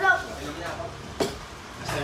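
The tail of a man's laughing talk, then low background at a food counter with a single sharp knock about a second in.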